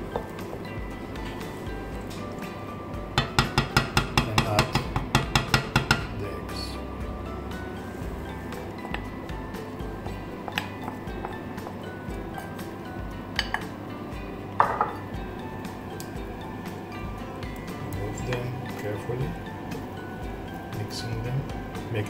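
A fork beating eggs in a bowl: a quick run of sharp metal-on-bowl clinks, about six a second for some three seconds. Later come a few single clinks and knocks of bowl and utensils, one ringing briefly, as the beaten egg is poured into the pan, all over soft background music.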